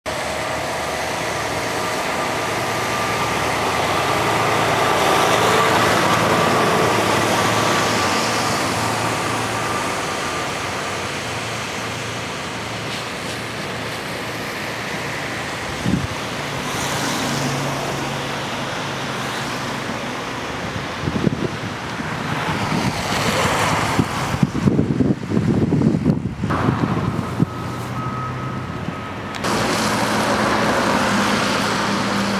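Road traffic going by, one vehicle swelling louder and fading over the first ten seconds. Irregular short bumps and rustles fill the last several seconds.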